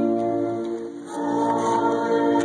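Choir singing slow, sustained chords, with a brief dip about a second in before the next chord starts.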